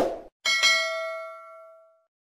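A short click, then about half a second in a single bell-like ding that rings on and fades away over about a second and a half: the notification-bell sound effect of a subscribe-button animation.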